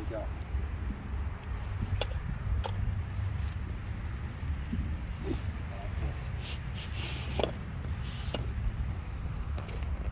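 Steady wind rumble on the microphone, with a short high whoosh about seven seconds in: a practice golf swing, the thin training stick swishing through the air. A few faint clicks come in between.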